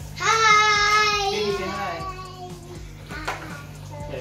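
A young child's voice holding one long sing-song note for about two and a half seconds, slowly falling in pitch at the end.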